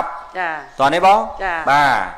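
Speech: a voice talking in long, gliding syllables, pitched higher than the surrounding talk.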